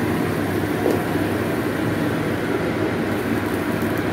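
A watery curry gravy boiling in a non-stick kadai: a steady, dense bubbling and sizzling.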